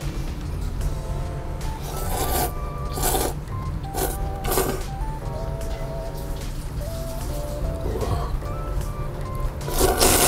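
Background music with a stepping melody over a steady low beat. Over it come short, loud slurps of thick ramen noodles: three in the first half and another at the very end.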